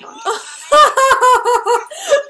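A young woman laughing out loud in a quick string of about seven 'ha' pulses, starting just under a second in.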